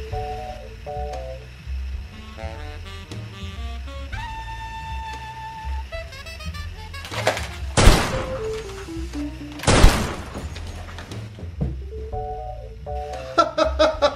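Two pistol gunshots about two seconds apart, the loudest sounds here, over background music with a simple melody and a steady bass.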